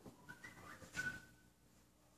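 Quiet hall with a few faint, brief high whistle-like tones stepping in pitch, and a soft click about a second in.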